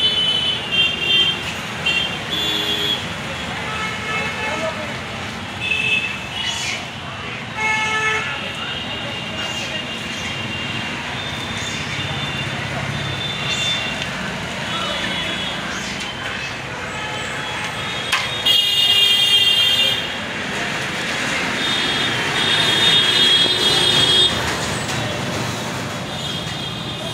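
Steady road-traffic noise with repeated short, high-pitched vehicle-horn toots, and one loud, long horn blast about 18 seconds in.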